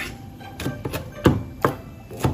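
Kitchen knife chopping leafy greens on a plastic cutting board: about five irregular blade strikes, the two loudest coming close together a little past the middle.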